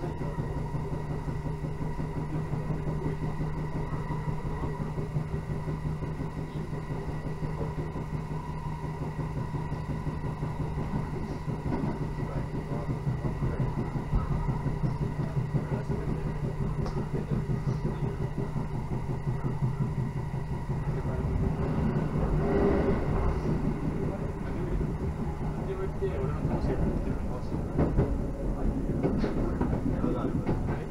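Electric local train running along the line, heard inside the carriage: a steady running hum with wheel-on-rail noise. About two-thirds of the way through the noise turns rougher and a little louder, with scattered clacks near the end as the train passes onto tracks with several sidings.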